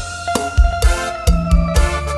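Live Khmer orkes band playing an instrumental cha cha passage: a steady drum beat about twice a second, a bass line and long held melody notes, with no singing.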